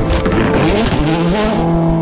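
Ford Fiesta engine revving hard through the gears: the pitch climbs and drops with each shift, then holds steady near the end. A rushing burst of noise opens the sound.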